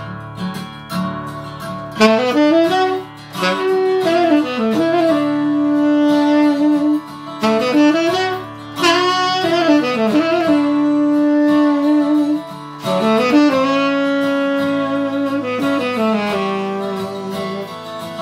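Saxophone solo over a guitar backing track. The saxophone comes in about two seconds in and plays phrases of held notes, with slides between pitches and short breaths between phrases.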